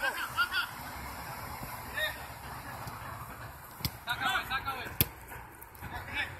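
Soccer players shouting short calls across the pitch, several times, with two sharp thuds of the ball being kicked, the louder one about five seconds in.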